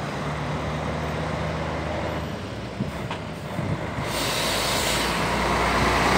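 A Mercedes-Benz grain truck's diesel engine, with a low steady hum at first, then engine and tyre noise swelling from about four seconds in as the truck approaches and draws close.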